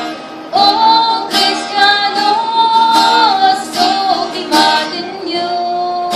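A woman singing a slow Ilocano hymn to a strummed acoustic guitar, holding a long note through the middle, with guitar strums every second or two.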